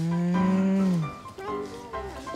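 An albino water buffalo giving one long moo, about a second long, steady and then dropping in pitch as it ends.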